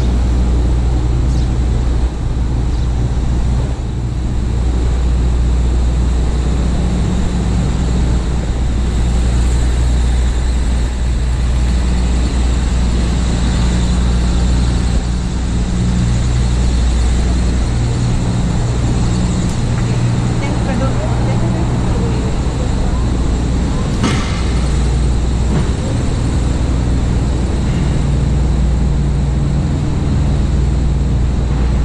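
City street traffic: a steady low rumble of engines and passing vehicles, with voices of passers-by at times and a short sharp knock about three-quarters of the way through.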